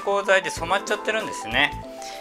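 A man speaking Japanese over soft background music with steady held notes.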